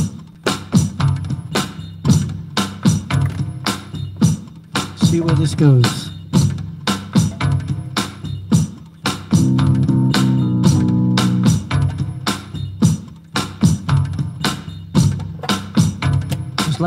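Looped Wavedrum percussion on an unusual electronic preset: a steady beat of sharp hits. An electric guitar chord rings for about two seconds near the middle.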